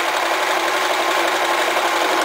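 Electric home sewing machine running at a steady speed, sewing a straight stitch through fabric: an even motor hum with the needle mechanism's rapid, regular ticking.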